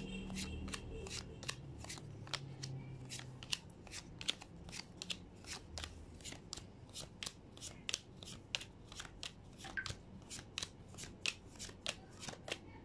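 Tarot cards being handled: a quick run of crisp card snaps and flicks, about three to four a second, with a low hum in the first couple of seconds.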